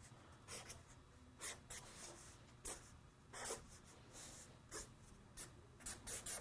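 Faint, short strokes of a drawing pen or marker on paper, about a dozen scattered through, roughly one every half second.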